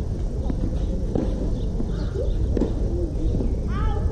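Outdoor ambience: a steady low rumble with faint distant voices, and a short high chirp near the end.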